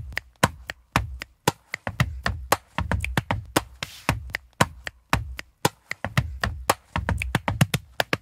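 Layered body percussion from four parts at once: chest hits, finger snaps and claps in a fast, driving groove, deep thumps under sharp clicks.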